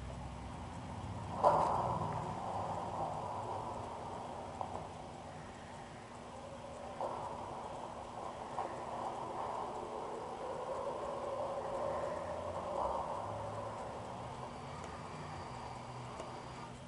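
Soundtrack of a film clip playing through a netbook's small built-in speakers: a sudden sound about a second and a half in, then a steady mid-pitched sound that shifts a few times.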